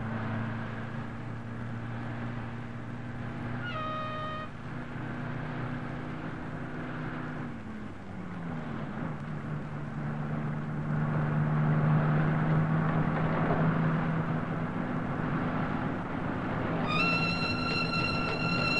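Bus engine running steadily, its pitch dropping about eight seconds in as the bus changes gear, then steady again. A short high tone sounds about four seconds in and again near the end.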